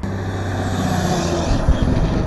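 A motor vehicle driving close past on a gravel road shoulder: engine running with tyre and road noise, growing louder to a peak with a few thumps near the end.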